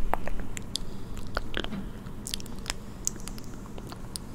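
Close-miked ASMR mouth sounds: irregular wet clicks and lip smacks, put through an echo effect.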